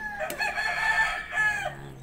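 A rooster crowing: one long call held for over a second, falling away near the end.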